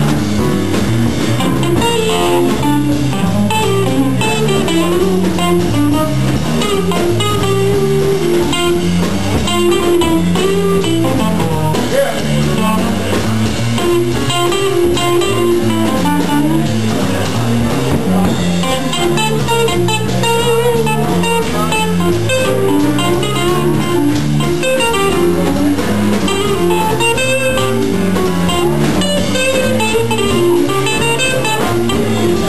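Jazz quintet playing without a break, with a plucked string instrument carrying a busy, moving line of notes in the low-middle range.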